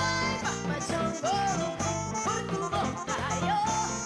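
A woman singing a merengue into a microphone over a live band, her voice holding and bending long notes above the steady accompaniment.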